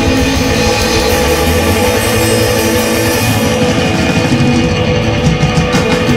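Live rock band playing loudly: electric guitars, bass guitar and a drum kit with cymbals, an instrumental passage without vocals.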